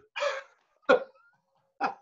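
A man laughing in short bursts: a breathy outburst at the start, a sharp single laugh about a second in, then a few quick 'ha' pulses near the end.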